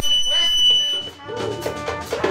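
Live band music with a singer's voice at the microphone. A high, steady whistling tone sits over it for about the first second and then cuts off. After a brief dip, the singing picks up again.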